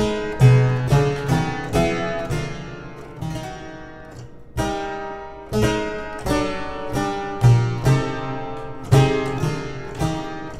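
Harpsichord playing a slow descending sequence of chords, each chord plucked with a bright, sharp attack and left to fade, roughly one a second.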